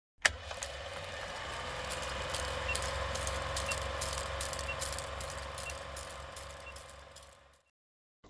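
Old film-projector sound effect for a film-leader countdown: a steady whirring hum speckled with crackle and pops, with a faint short beep about once a second. It opens with a sharp click and fades out near the end.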